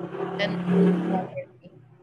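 A woman speaking, drawing one word out into a long held syllable, then a short pause.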